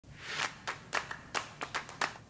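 A quick, irregular series of about eight light, sharp taps, roughly four a second.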